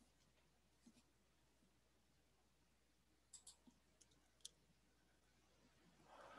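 Near silence, broken by a few faint, short clicks: two close together about three and a half seconds in, then two more shortly after.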